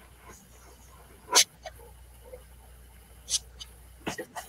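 Faint background noise of a video-call audio feed, broken by two brief sharp noises: a louder one about a third of the way in and a weaker one near the end.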